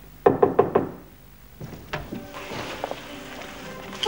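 A quick run of about five knocks on a door in the first second, followed about two seconds in by a couple of clicks as the door is opened.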